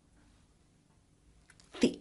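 Near silence, then a short intake of breath about a second and a half in, and a woman's voice starting to speak near the end.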